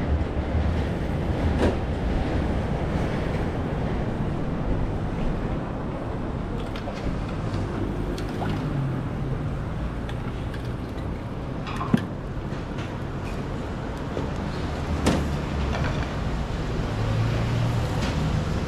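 Steady rumble of road traffic passing close by, with a few sharp clinks of kitchen utensils, the loudest about twelve seconds in.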